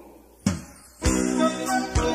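A live band starting a song: a single hit about half a second in, then about a second in the band comes in with sustained chords played steadily.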